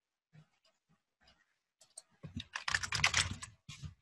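Typing on a computer keyboard: a few scattered keystrokes, then a quick run of keystrokes a little past halfway through.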